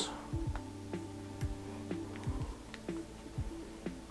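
A series of faint, irregular clicks from the small buttons of an LED light strip's remote being pressed again and again, as the remote responds only intermittently. Quiet background music with steady tones runs underneath.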